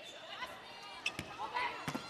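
A volleyball being struck during a rally: two sharp hits, about a second in and near the end, over faint arena crowd noise and players' calls.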